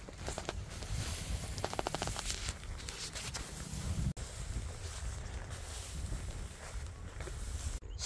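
Wind buffeting the microphone outdoors, with footsteps through long grass and the rustle and rattle of a roll of chicken wire being carried and handled. A run of light ticks comes about two seconds in, and the sound drops out briefly about four seconds in.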